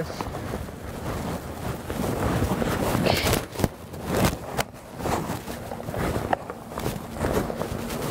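Climbing cord and gear handled by hand: rustling with scattered short clicks.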